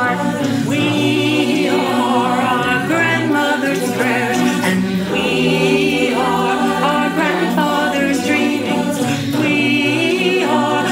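A cappella mixed choir of adult and youth voices singing in close harmony, a virtual-choir mix of separately recorded singers. The chords are held and sustained, with wavering vibrato in the high voices.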